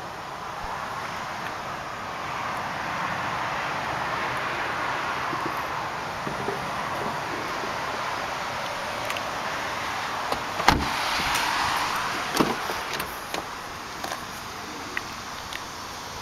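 A car door of a 2005 Volkswagen Passat shuts with a sharp thump about two-thirds of the way in, followed by a second, lighter knock and a few small clicks, over a steady hiss.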